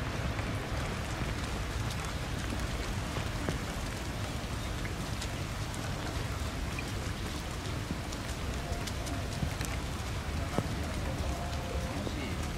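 Steady rain falling, with scattered light drop ticks.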